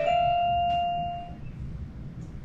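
A child's electronic toy keyboard sounding one held note that fades out about a second and a half in.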